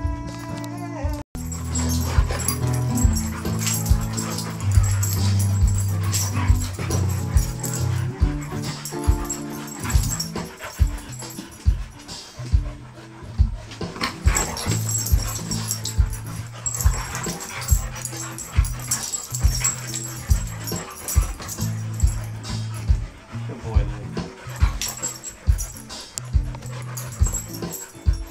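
Two dogs play-fighting, growling and barking at each other, over background music with a steady beat. The sound drops out briefly about a second in.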